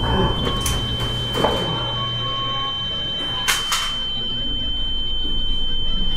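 Film sound effect: a steady high-pitched ringing tone, the ear-ringing effect that follows a revolver shot, over a low drone that fades out about halfway, with a few faint knocks and scuffs.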